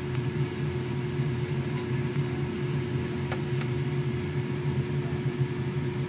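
Steady mechanical hum of a tabletop barbecue grill's ventilation fan, a constant drone with a low tone under a faint hiss, with two light clicks about halfway through.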